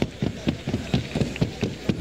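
Hooves of a Colombian paso horse striking the track in a quick, even rhythm, about six or seven beats a second.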